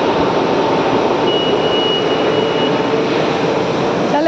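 Steady, loud rushing ambience of a large, busy mall atrium. A thin, high electronic tone is held for about a second and a half midway through.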